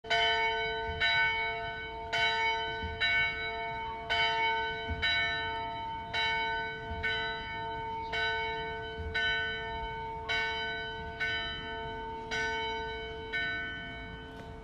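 A single church bell tolling steadily, about one strike a second, the same note each time, each strike ringing on into the next.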